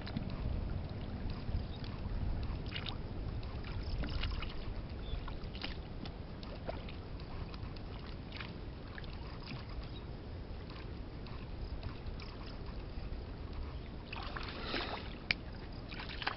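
Small splashes and sloshes of hands working a plastic bottle trap in shallow muddy water, scattered through, with a busier run of splashing near the end, over a steady low rumble.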